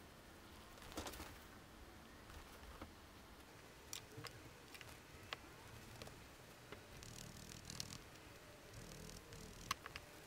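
Very faint handling sounds over quiet room tone: a few scattered soft clicks and light rustles as wool tufts and a felting tool are picked up and handled.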